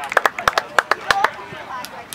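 Scattered hand claps from spectators, a quick irregular run over the first second or so, with faint distant voices.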